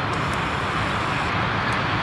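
Steady outdoor rumble and hiss of a railway line with a freight train approaching in the distance, headed by a VL10u electric locomotive.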